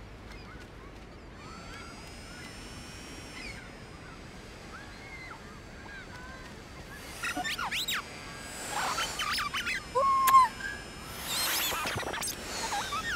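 Seaside ambience with gulls calling at intervals, the calls louder and sweeping up and down past the middle, and a rush of noise near the end.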